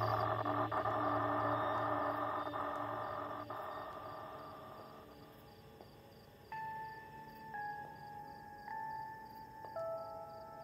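Eerie horror background score. A dense, droning wash fades away over the first five seconds, then a slow line of held high notes steps in pitch about once a second.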